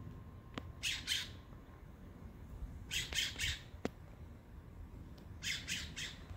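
A bird giving harsh calls in short runs: two about a second in, three or four around the three-second mark, and two more near the end, with a couple of faint clicks between them.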